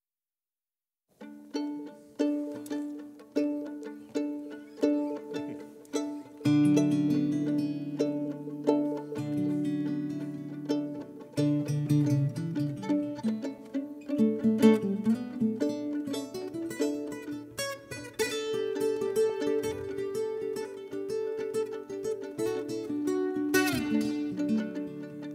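Viola caipira (Brazilian ten-string guitar) and violin playing an instrumental duet. It begins about a second in with single plucked notes at a steady pace. From about six seconds the playing grows fuller, with lower notes and held tones.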